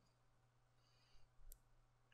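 Near silence with a single faint click of a computer mouse button about one and a half seconds in.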